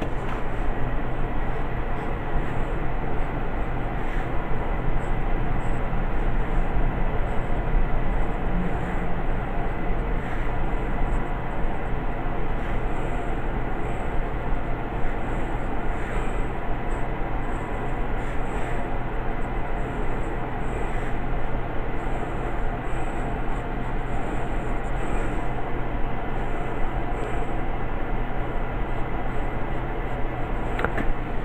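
Steady low hum and hiss of background noise, with intermittent faint scratching of a graphite pencil drawing lines on sketch paper.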